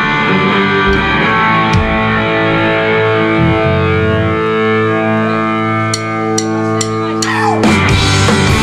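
Live punk rock band: electric guitar chords ring out and sustain, with a few sharp clicks near the end, then a falling slide as the full band with drums comes in just before the end.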